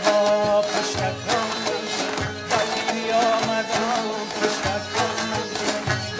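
Live Badakhshi folk music: a bowed fiddle and plucked long-necked lutes playing a wavering melody over a steady struck beat.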